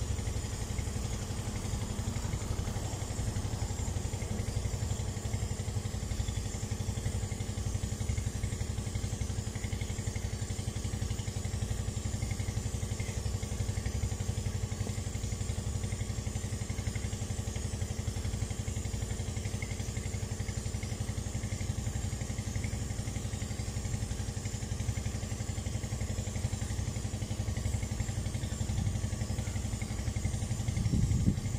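An engine running steadily at an even idle, a low constant hum with no change in speed.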